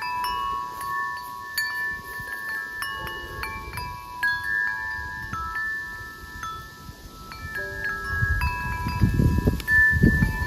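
Tubular wind chime ringing in the breeze: clear tones struck at irregular moments, several ringing over one another. A low rumble rises near the end.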